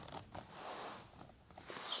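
Faint rustling and scraping with a few light clicks: pens being handled and shifted on the tabletop.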